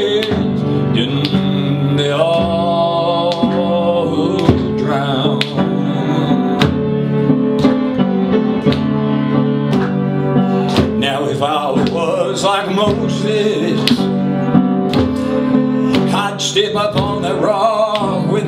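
Upright piano played at a steady rhythm, struck chords over held bass notes, with the player's singing voice coming in here and there.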